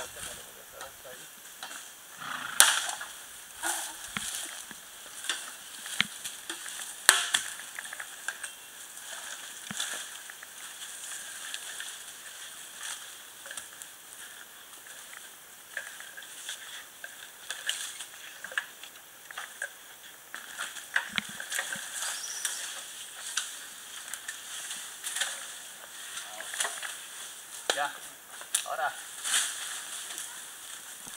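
Dry bamboo stems and leaves crackling and snapping as a cut bamboo culm hung up in the grove is pushed and pulled with a pole, with scattered sharp cracks, two loud ones in the first eight seconds, over a steady high hiss.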